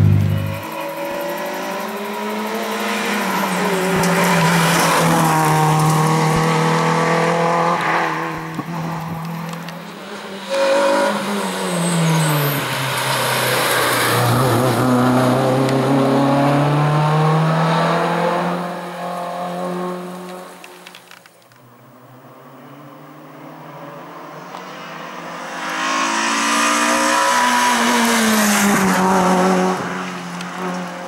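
A race-prepared hatchback's engine is revved hard up a hill-climb course. Its pitch repeatedly climbs through the gears and drops back for the bends. The sound fades away about two-thirds through, then comes back loud as the car approaches again.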